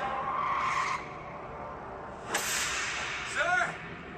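TV trailer sound design: a dense, noisy sustained tone that drops away about a second in, then a sudden loud whoosh-like hit a little past two seconds, followed near the end by a short pitched sound that bends up and down.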